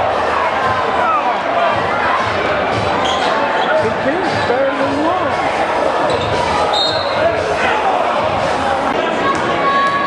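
A basketball bouncing on the court during live play in a large gym, amid the steady noise of crowd and player voices.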